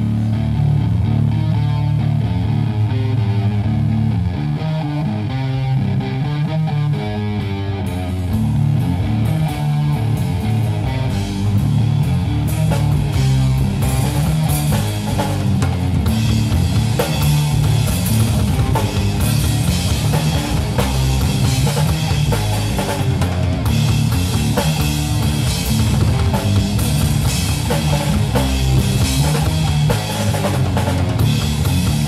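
A live rock band plays electric guitar, bass guitar and drum kit through a stage PA, loud and steady. About eight seconds in, cymbals join and the drumming turns fuller.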